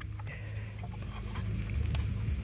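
Low handling rumble with faint rustles and clicks as a thin GPS antenna cable is wound around a plastic twist port adapter, slowly growing louder. Crickets chirp steadily behind it.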